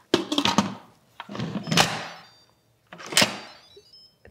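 Instant Pot pressure cooker lid set on the stainless pot and twisted shut by its handle. A few clicks come first, then a scraping turn, then a sharp knock a little after three seconds as the lid seats.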